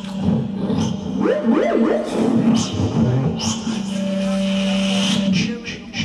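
A performer's voice through a microphone and PA imitating synthesizer sounds: quick rising and falling pitch sweeps about a second in, then a long steady low drone with hissing over it that stops a little after five seconds in.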